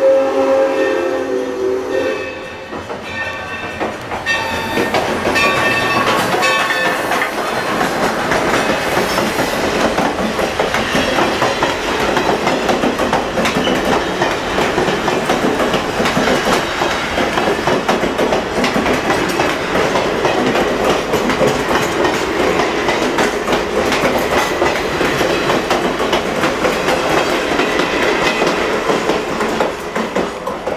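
Steam locomotive whistle sounding for about two seconds, then its bell ringing about once a second for a few seconds, then the train's passenger coaches and caboose rolling past with a steady clickety-clack of wheels over the rail joints.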